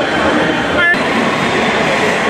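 Voices of a crowd over the steady running of a coach's engine, with a brief high squeal about a second in.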